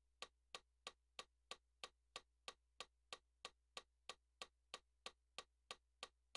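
Metronome clicking steadily at a fast tempo, about three even clicks a second, faint over a low steady hum.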